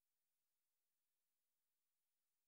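Near silence: only a faint, even hiss.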